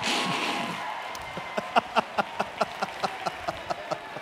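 A short burst of crowd noise fading away, then a run of quick, even hand claps, about five a second, starting about a second and a half in.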